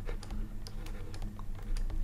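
Light, irregular clicks and taps of a stylus on a pen tablet as a short expression is written by hand, over a faint steady electrical hum.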